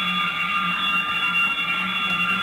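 A loud, steady electronic drone of several pitches held together without change, sounded to rouse the sleeping housemates.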